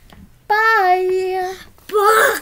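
A child's voice holding one long sung note for about a second, steady in pitch, followed near the end by a loud, rougher shout.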